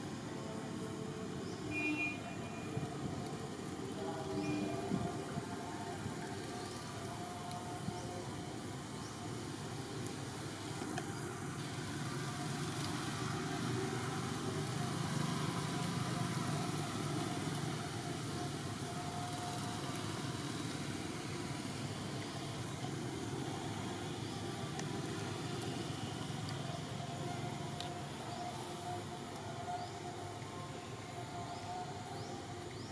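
Steady outdoor background noise with a low rumble that swells and fades around the middle, like distant traffic.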